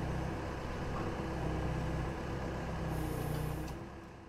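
Heavy vehicle engine idling steadily, with a brief high hiss about three seconds in; the sound starts fading out near the end.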